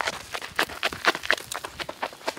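Quick running footsteps on a gravel dirt path, about five or six crunching steps a second, as a man sprints uphill, growing fainter as he moves away.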